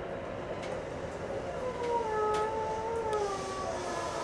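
Electric train running over track switches with a few faint wheel clicks. From under halfway in, the traction motors whine, a tone that slowly falls in pitch as the train slows.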